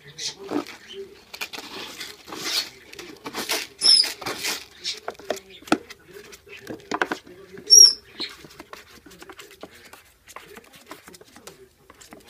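A kitten scratching and digging in granular cat litter inside a plastic litter box: irregular bursts of scraping and rattling granules, with two short high squeaks, one about four seconds in and a louder one near eight seconds.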